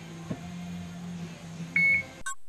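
Drift Ghost XL helmet camera giving a single short high-pitched beep near the end as it starts recording in one-touch instant record mode, over a faint steady low hum.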